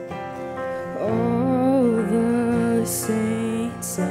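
Live worship band music: acoustic guitar and bass chords, with a woman's voice singing a slow melody that comes in about a second in.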